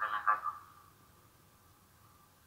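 A voice speaking briefly at the very start, then near-quiet room tone with a faint steady hum.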